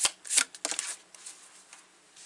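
Tarot cards being shuffled by hand: a few crisp card snaps in the first second, then only faint rustling.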